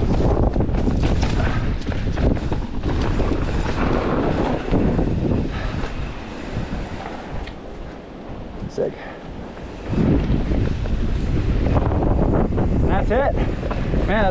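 Specialized Kenevo SL mountain bike riding fast down rocky dirt singletrack: tyres crunching over stones and the bike rattling and knocking over bumps, with wind buffeting the microphone. It eases off in the middle and gets loud again at about ten seconds, and a shout starts just before the end.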